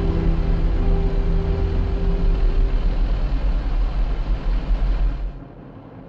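A steady low machine rumble, heavy in the bass, under held music notes that fade out over the first few seconds. The rumble falls away suddenly a little past five seconds, leaving a much quieter hum.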